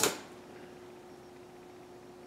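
Quiet room tone: a faint steady hum over low hiss, with no distinct event.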